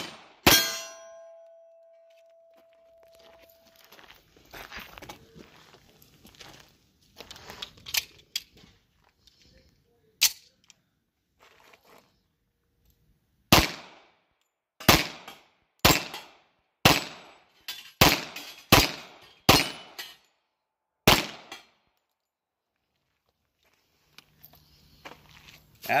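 Tisas 1911A1 .45 ACP pistol firing at steel targets, about ten shots in all: two quick shots near the start, with a steel plate ringing for about three seconds after them, one more shot after a long pause, then a string of eight shots about a second apart.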